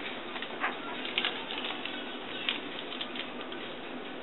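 Sterile urinary catheter package being peeled and handled open, small crinkles and crackles coming irregularly, over a steady room hiss.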